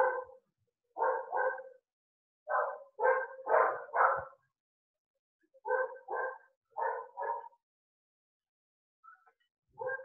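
A dog barking, about a dozen short barks in groups of two to four with brief pauses between, heard over a video call.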